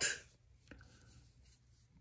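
The tail of a man's spoken word fading out, then a pause of near silence in a small room, broken by one faint click just under a second in.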